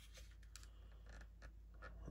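Near silence: room tone with a few faint, brief scratches and clicks.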